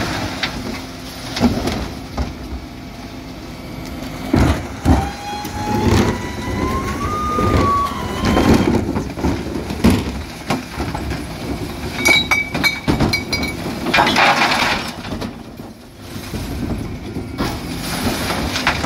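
Refuse collection lorry's diesel engine running while its rear bin lift tips wheelie bins. There are several sharp knocks and clatters of bins and lift, a rising whine in the middle, a quick series of high beeps about twelve seconds in, and a short burst of rushing noise just after.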